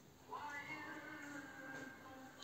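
A faint, long drawn-out pitched call, steady in pitch, starting about a third of a second in.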